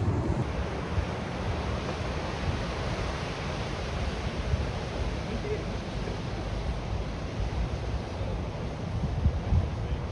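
Small waves breaking and washing up the beach as a steady rush, with wind buffeting the microphone in uneven low rumbles that swell near the end.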